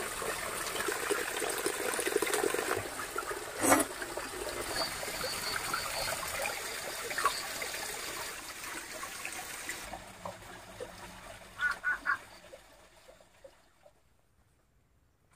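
Water trickling and running steadily, with one sharp knock about four seconds in. The water fades out after about ten seconds, three quick taps follow, and it ends near silent.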